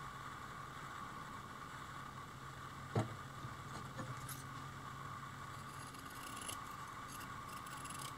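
Faint steady hum of an electric fan, with a single sharp click about three seconds in. Light rustling and snipping follow as fiberglass mat is handled and cut with scissors.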